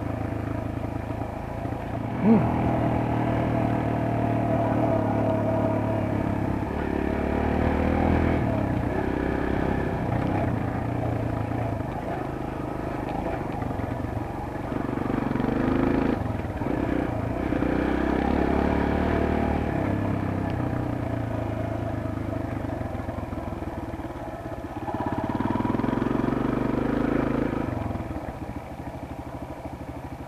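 Kawasaki KLX140G's small air-cooled single-cylinder four-stroke engine running under way, its revs rising and falling, with one brief sharp knock about two seconds in. The clutch is worn and slipping badly, by the rider's feel.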